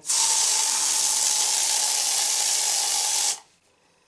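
Aerosol can of air freshener spraying in one continuous hiss for about three seconds, then cutting off sharply.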